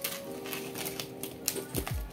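Scissors snipping and cutting through plastic wrap and packing tape on a cardboard parcel: a run of irregular sharp clicks and crinkles. Background music with steady held notes plays underneath, with a falling low sweep near the end.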